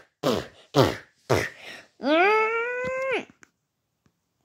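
A child's voice making play-fight noises: three short grunts, each falling in pitch, then a long wailing cry of about a second that rises and holds before it stops.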